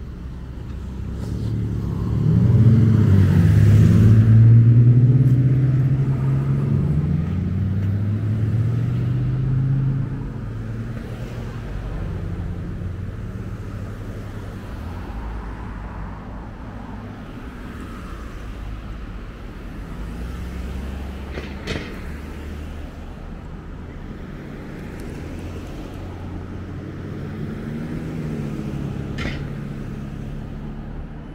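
Road traffic: cars passing close by. The loudest pass comes about 2 to 10 seconds in, with the engine note shifting in pitch, and is followed by a steady, quieter traffic rumble, with another car passing near the end. Two brief clicks about 22 and 29 seconds in.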